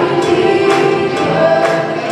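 Live worship band: several singers in harmony backed by instruments, with a drum hit about once a second.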